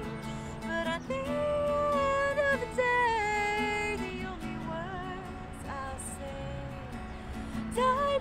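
A woman singing long held notes over a strummed acoustic guitar. The voice drops back in the middle and comes in strongly again near the end.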